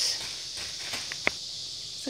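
Soft rustling of a plastic bag of steamed rice being squeezed and pressed by hand, over a low hiss, with one sharp click a little past halfway.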